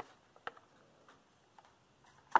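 Near silence broken by four faint, short clicks about half a second apart.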